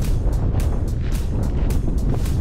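Wind buffeting the camera microphone in a steady low rumble, with irregular gusty rustles.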